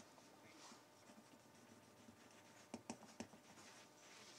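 Near silence: faint room tone, with a few faint clicks in the second half.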